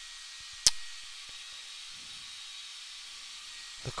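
Steady airy hiss of a hair dryer blowing on the canvas to dry wet acrylic paint, with one sharp click near the start.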